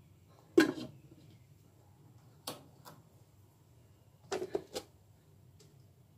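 Stainless steel cookware clanking: a sharp metal knock with a short ring about half a second in, a lighter click near the middle, and a quick run of knocks past the four-second mark.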